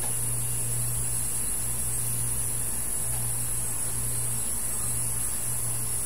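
Steady low electrical hum with a faint high hiss, unchanging throughout, with no other sound on top.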